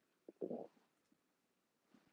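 A brief, low gurgle from a person's body, about half a second in, in an otherwise near-silent room.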